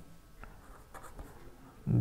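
Ballpoint pen writing on paper: faint, light scratching strokes with a few small ticks as letters are written.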